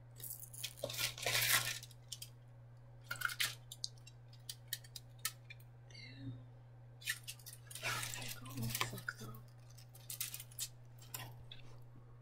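A styrofoam takeout clamshell and its wrapping being handled and opened. Irregular rustles, crinkles and sharp clicks, with a brief squeak about midway, all over a steady low hum.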